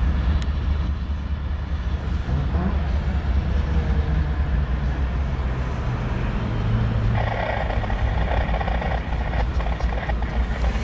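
CSX diesel freight locomotives running as the train comes along the track, with wind buffeting the microphone. A brighter steady sound joins about seven seconds in and lasts about two seconds.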